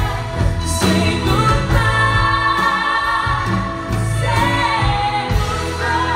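Live band performance with a female lead vocal and several women singing harmony, holding long sung notes over the band.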